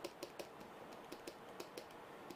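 Faint, irregular clicks and taps of a stylus on a pen tablet, several a second, as a word is handwritten stroke by stroke.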